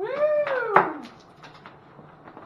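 Inflatable vinyl tube squeaking as it is dragged against the van's rear window opening: one squeak under a second long that rises then falls in pitch, ending in a sharp knock.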